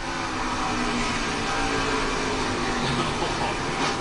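Steady drone of a NASCAR Xfinity stock car's V8 engine on an onboard camera feed, played through a TV's speakers.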